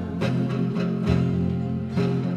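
Instrumental gap in a 1962 folk-group record, transferred from a mono 45: strummed guitar over steady bass notes between sung lines.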